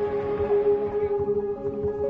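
Background music holding one long sustained note over a soft low pulse.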